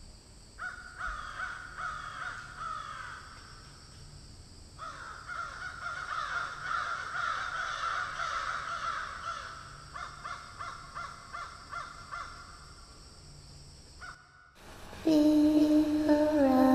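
Many birds calling at once, overlapping falling calls over a steady hiss, with a short pause about four seconds in. Music begins about a second before the end.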